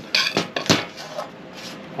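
An angle grinder that is not running is set down on a steel sheet: a short scrape and a couple of sharp metallic knocks within the first second, then quieter handling.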